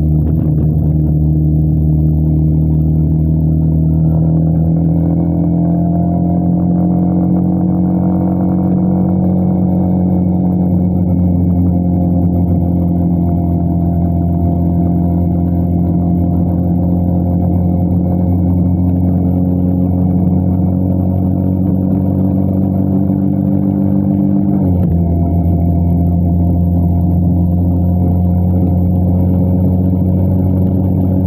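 Motorcycle engine running under way, its pitch rising slowly as the bike gathers speed, then dropping suddenly near the end with an upshift and running on steadily.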